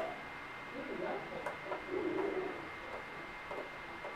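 Faint cooing like a pigeon or dove, heard twice, about a second in and again around two seconds in, with a few soft clicks from the monitor's buttons being pressed. A faint steady high whine runs underneath.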